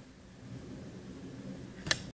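Faint low room noise with a soft hum, then one sharp click just before the end: the camera being handled as the recording is stopped.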